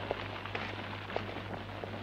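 Faint crackling of a campfire, a few scattered pops over an even hiss, with a steady low hum in the film's soundtrack.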